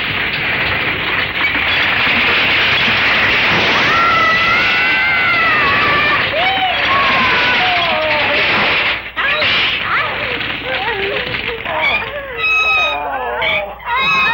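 Cartoon sound effect of a brick wall and wooden fire escape collapsing: a dense rumble of falling masonry for about nine seconds, with wailing cries rising and falling over it. After a brief drop, shouting voices take over near the end.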